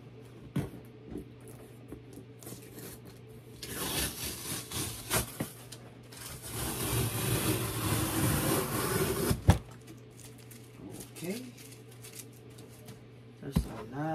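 Large cardboard shipping box being handled and shifted: two stretches of cardboard rubbing and scraping, about four and seven seconds in, the second ending in a sharp knock. A low steady hum runs underneath.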